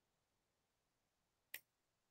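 Near silence with a single short computer-mouse click about one and a half seconds in.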